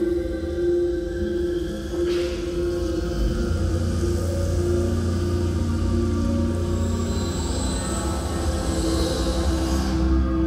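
Cinematic film soundtrack music played over an auditorium's speakers: sustained low held notes, with a deep rumble swelling in a few seconds in and a faint high tone toward the end.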